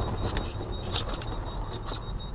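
A car driving, heard from inside the cabin: a steady low road rumble with several light clicks scattered through it.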